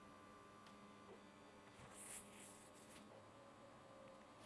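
Near silence, with a faint steady hum from two small stepper motors turning continuously under step-pulse control.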